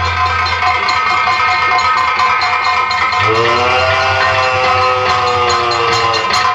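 Live Nautanki folk-theatre accompaniment: a barrel drum beats a steady rhythm under sustained melodic tones. From about three seconds in, a long held note rises and then slowly falls.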